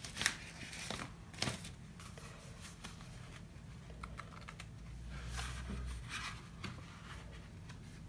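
Paper and craft tools being handled: scattered light clicks, taps and rustles of cardstock, with a brief low rumble about five seconds in.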